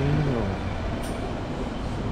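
Steady rushing noise while passing through a shop's automatic sliding-door entrance, with a brief voice right at the start and a short high blip about a second in.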